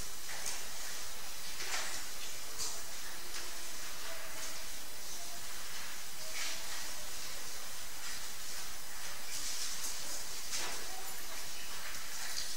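Steady hiss from an open lectern microphone with no one speaking, with a few faint brief rustles.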